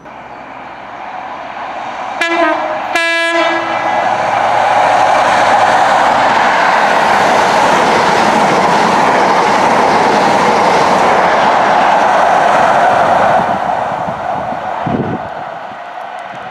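CrossCountry Class 43 HST, power cars 43304 and 43366, running through a station at speed. It sounds its horn briefly about two seconds in. The rush of the diesel power cars and wheels on the rails then builds to a loud, steady pass and fades over the last few seconds.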